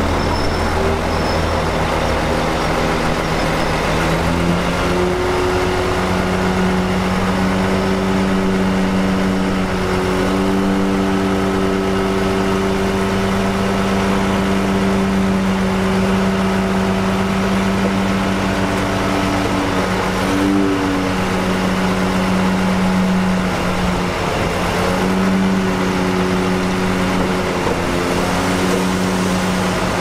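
Crawler bulldozer's diesel engine running steadily under load. The engine note rises about five seconds in, dips briefly near the middle and climbs again later.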